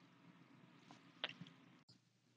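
Near silence: faint room tone with a single soft click about a second in.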